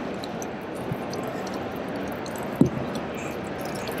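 Water sloshing and dripping around an upturned plastic kayak as a person kneels on its hull, with a soft knock about a second in and a sharper knock a little past halfway. Under it runs the steady hum of a large exhibition hall.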